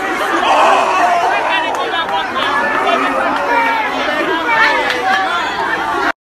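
A packed crowd of young people shouting and talking over one another in a loud, continuous babble of many voices.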